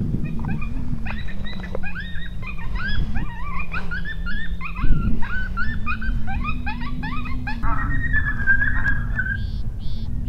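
A chorus of coyotes yipping and yelping: many short, quick, up-and-down calls overlapping, which run into one long held howl near the end.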